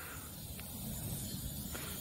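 Faint, steady low rumble with a light hiss in the open air as a summer thunderstorm builds.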